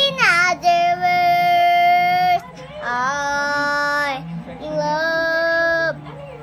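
A four-year-old girl singing: a quick sweep up and down, then three long held notes with short breaks between them.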